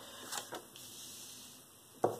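A tarot card being drawn from the deck and laid on a cloth: a couple of soft, brief card sounds about half a second in, then faint room tone.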